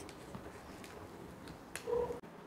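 Faint rustling and a few soft crackles of a banana leaf being peeled back by hand, with one short, louder crackle near the end.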